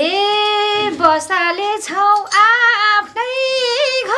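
A woman singing a Nepali folk song (lok geet) unaccompanied in a high voice. She sings in short phrases with wavering, ornamented pitch and brief breaths between them.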